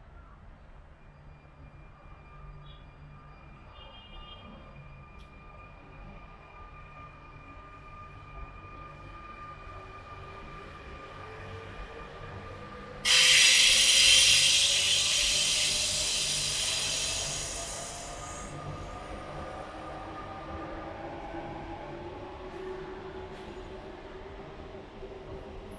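Paris Métro line 6 train on the Bir-Hakeim viaduct: a faint steady whine builds slowly, then about halfway through a sudden loud, high-pitched wheel squeal sets in, lasts about five seconds and fades. Under it a lower whine rises slowly in pitch.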